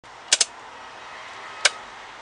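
Key clicking in the ignition switch of a 2001 Mercedes Sprinter as the ignition is switched on before starting: two quick sharp clicks, then a third about a second later.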